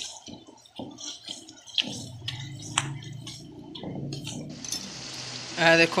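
A wooden spatula stirring and scraping a wet tomato masala around an aluminium karahi, with light clicks and squelches over the first few seconds. A low steady hum comes in after about two seconds, and a hiss joins it near the end.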